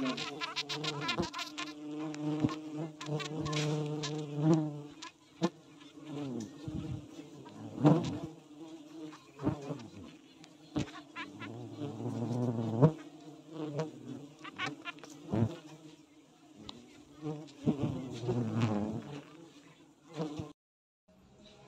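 A swarm of Itama stingless bees (Heterotrigona itama) buzzing close around an opened hive, the hum rising and falling as bees fly past. The colony is being disturbed by being split. A few sharp wooden knocks come as the hive boxes are handled.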